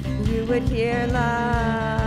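Live worship band music: a woman's voice singing lead and holding a long note from about a second in, over keyboard and bass guitar with a steady beat.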